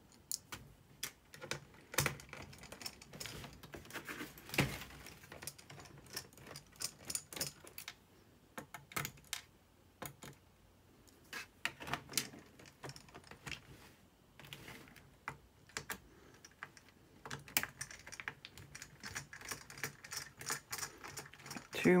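Irregular small clicks and taps of a Phillips screwdriver working screws out of a Dell Inspiron N5110 laptop's plastic bottom case, with small screws being set down on the table. One louder knock comes about four and a half seconds in.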